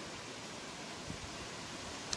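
Faint, steady background hiss with no distinct sounds in it.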